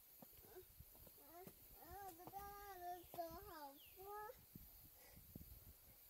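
A child's voice, faint and at some distance, giving a few drawn-out, sing-song calls in the middle of the stretch.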